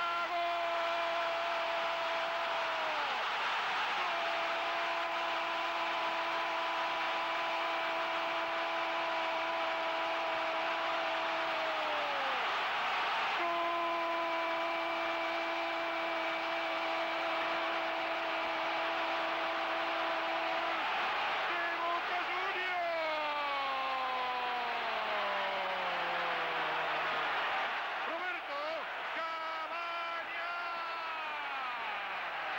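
A football commentator's long, drawn-out goal cry, held on one steady high note in three long stretches with short breaks for breath, then falling in pitch near the end. Under it, a stadium crowd cheers steadily.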